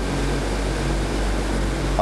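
Steady background noise in a pause between speech: a low hum under an even hiss, holding level throughout.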